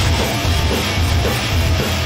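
Live heavy metal band playing loud and dense: electric guitars, bass guitar and drum kit together, with no singing.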